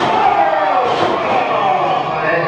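A wrestler's body slamming onto the wrestling ring mat, a sharp hit about a second in, with voices shouting around it.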